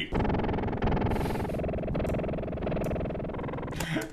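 A sampled music loop played through a stack of FL Studio Gross Beat time and pitch effects, coming out buzzy and distorted, its pitch shifting in steps every second or so. Ugly.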